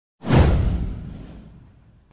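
A whoosh sound effect, an intro transition: it swells suddenly about a quarter second in, sweeps downward in pitch over a deep rumble and fades out over a second and a half.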